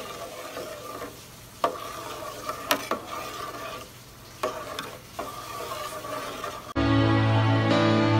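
A spoon stirring sugar into hot water in a metal pot, with a steady gritty scraping and a few sharp clinks against the pot's side. Near the end, loud music cuts in suddenly.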